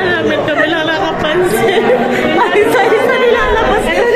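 Several people talking at once: a steady mix of overlapping voices, none clear enough to pick out.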